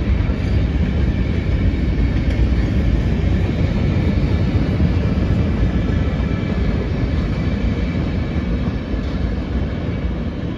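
Freight train cars rolling past on the rails, a steady rumble of steel wheels that holds level throughout.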